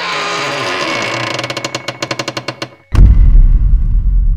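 Trailer sound design: a dense swell with a fast rattling stutter, which cuts off and is followed about three seconds in by a loud, deep boom that rumbles on.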